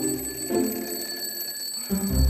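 Alarm clock ringing with a steady, high-pitched ring.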